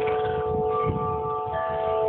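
Wind chimes ringing, several notes sounding together and ringing on, with new notes joining about one and a half seconds in.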